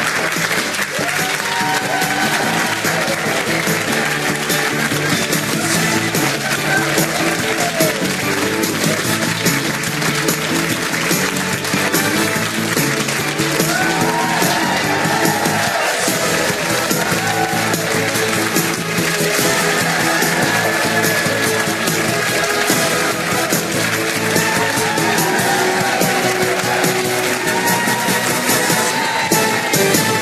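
Television show's closing theme music playing over the end credits, with studio audience applause.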